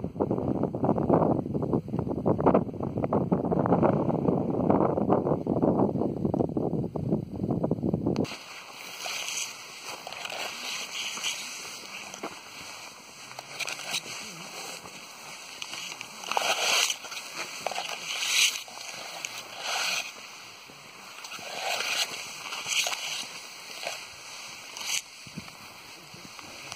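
Tall dry tussock grass swishing and rustling as it brushes against the camera and walkers' legs, in irregular short bursts. For the first eight seconds a louder, deeper rushing covers it, then cuts off suddenly.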